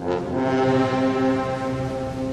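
Guatemalan funeral march (marcha fúnebre) played by a brass band: a full, sustained brass chord enters at once after a brief hush and is held, with the harmony shifting slightly near the end.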